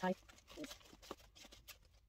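Drawstring cord being pulled loose on a cloth dust bag: scattered soft rustles of fabric and cord.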